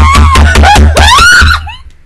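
A woman's loud, high-pitched excited scream, distorted by its loudness, with the pitch sliding up and down, breaking off shortly before the end: a squeal of delight.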